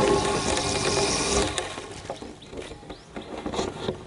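A fishing rod swung through a cast, heard from a camera fixed to the rod: a rush of air and line running off the reel, loudest for the first second and a half and fading away over the next second or so. A few faint ticks follow near the end.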